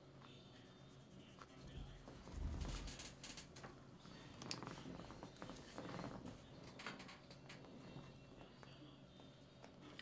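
Quiet room with faint scattered clicks and rustles of handling at a desk, and a soft low thump about two and a half seconds in.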